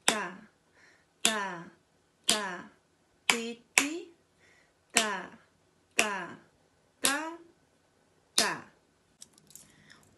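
A flexible ruler flicked against the hand in a steady rhythm, nine strokes about a second apart with a quick pair in the middle. Each stroke is a sharp snap followed by a short ring that falls in pitch.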